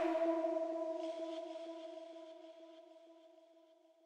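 A single held synthesizer note rings out and fades away over about two seconds as an electronic music track ends, followed by near silence.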